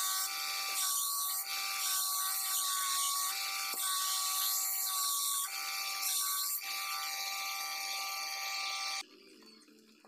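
Motor-driven belt grinder running with a steady whine while a steel knife blade is ground against the belt, the grinding hiss swelling and easing with each pass of the blade. The sound cuts off abruptly about nine seconds in.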